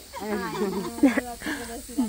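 Several women's voices talking over each other in indistinct chatter, with a faint steady high hiss underneath.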